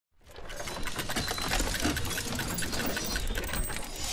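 Sound-effect machinery from an animated intro: a rapid, even mechanical clicking, about five clicks a second, over a whirring hum, fading in from silence at the start.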